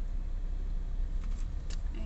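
Low, steady rumble of a Citroën car moving slowly along a highway, heard from inside the cabin, with a few faint clicks near the end.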